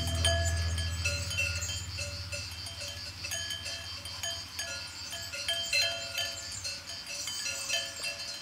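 Sheep bells clinking irregularly as the flock moves, over a low held tone that fades away as the piece ends.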